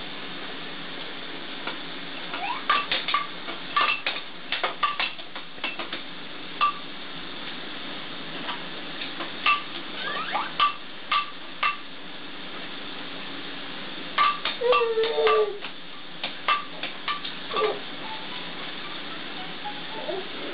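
Hard plastic baby toys on a bouncer seat's toy bar clicking and clattering in irregular flurries as the baby moves, each click with a short ringing note, and a brief baby vocalization about fifteen seconds in.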